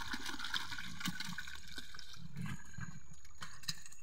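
Water splashing and sloshing as live fish are tipped from a plastic bucket into a shallow pond, with scattered small splashes and a few low thumps.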